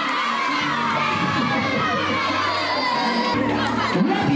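A large crowd of schoolchildren shouting and cheering on a sprint race, many voices at once, steady and loud throughout.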